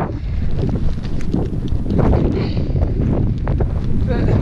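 Wind buffeting the camera microphone, a loud, uneven low rumble, with scattered small clicks and rustles over it.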